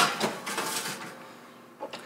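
Metal roasting pan set onto an oven's wire rack and slid in: a clank at the start, then a metallic scraping that fades out over about a second, and a faint click near the end.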